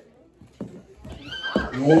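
A break in a performance mix's music, then a short, high, sliding whinny-like sound about a second and a half in, just before a spoken voice clip in the mix begins.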